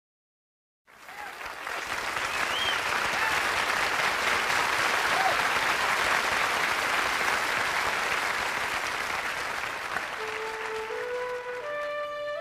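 Live concert audience applauding, with a few whistles, starting just under a second in after silence. About ten seconds in, the band's intro comes in as a slow rising run of held instrument notes while the applause eases.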